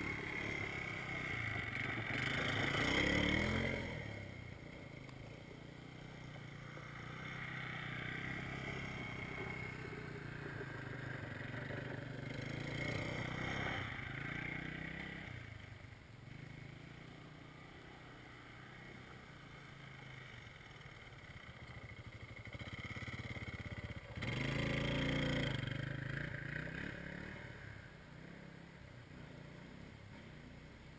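ATV (four-wheeler) engine running as it rides around the yard, loudest as it comes close about three seconds in and again from about 24 seconds in, quieter in between.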